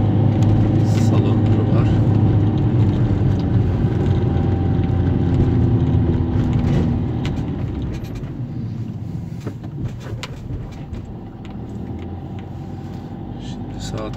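Car engine and road noise heard from inside the cabin, a steady low hum while driving uphill. The sound drops noticeably about halfway through as the engine eases off near the crest.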